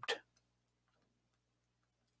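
Faint, scattered ticks of a stylus tapping on a tablet screen during handwriting, over a low steady hum.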